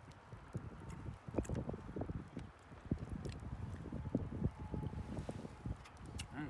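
Close-up eating noises: chewing and mouth smacks, an irregular run of soft clicks, with a few sharper clicks among them.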